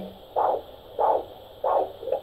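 Handheld fetal Doppler monitor playing the mother's own heartbeat through its speaker: a steady pulse, three beats in two seconds, about 100 beats a minute. The rate is still somewhat raised.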